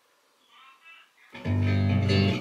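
Electric bass guitar: near silence, then about a second and a half in a single low note is plucked and left ringing, the A-flat on the fourth string that ends the arpeggio sequence.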